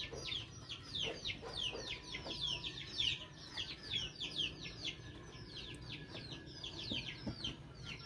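Young native Indonesian (kampung) chicks peeping together: a rapid, continuous run of short, high peeps, each falling in pitch, from several chicks at once.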